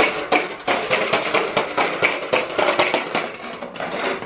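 Push-along corn popper toy being rolled, its balls popping against the clear dome in rapid, irregular clicks, several a second.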